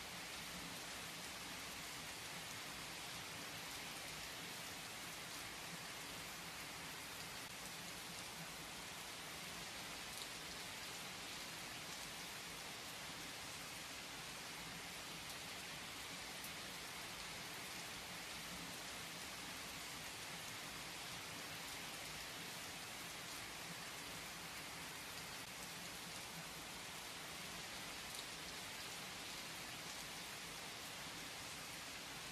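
Steady rain falling: an even, unchanging hiss.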